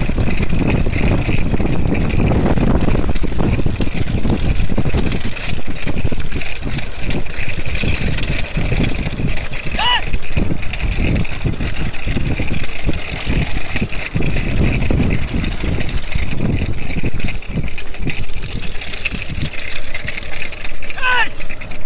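Bullock cart race on the move: wind buffets the microphone over the rumble of the moving cart and camera vehicle, with a steady high jingle from the bullocks' bells. About halfway through comes one short call that rises and falls in pitch.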